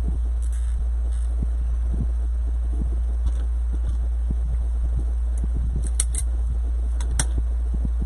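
Light crinkling and rustling of poly deco mesh being handled, with a couple of sharp clicks about six and seven seconds in, over a steady low hum.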